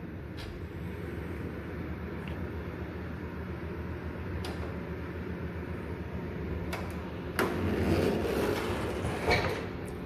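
Steady background hum with a few sharp clicks, and a louder stretch of rustling handling noise from about seven and a half seconds in.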